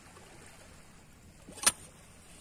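Faint water sloshing, then about one and a half seconds in a single sharp strike as a spear is thrust down into a hole in the reef, the hit that spears an octopus hiding inside.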